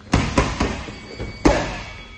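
Boxing gloves striking focus mitts: three quick punches in a burst, then after a short pause one louder punch.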